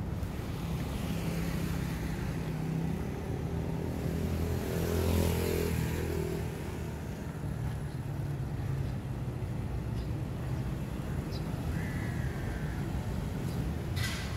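Road traffic running steadily, with a motor vehicle passing close by and loudest about five seconds in.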